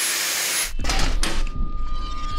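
Angle grinder running a Norton Blaze Rapid Strip disc along a carbon steel pipe, stripping off mill scale with a steady hiss. The hiss cuts off under a second in and gives way to a few knocks, a low rumble and a steady high whine.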